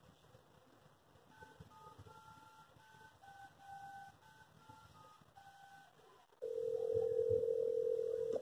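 Touch-tone telephone dialing: about a dozen short two-note keypad beeps, some held a little longer. About six seconds in, a louder steady tone sounds as the call goes through.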